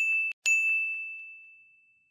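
Edited-in bell 'ding' sound effects: one ding is cut short a third of a second in by the next, which rings out and slowly fades away.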